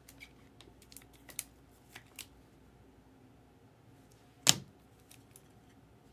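Trading cards and their plastic sleeves and holders being handled: a few light clicks and rustles in the first two seconds, then one sharp tap about four and a half seconds in, the loudest sound.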